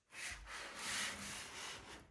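A woven basket being handled and shifted, its woven fibres rubbing and scraping in one continuous rustle for most of two seconds, loudest about a second in.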